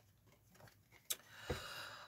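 Near silence, then a light click about a second in and a soft tap about half a second later, with faint rustling: tarot cards being drawn from the deck and laid on the cloth-covered table.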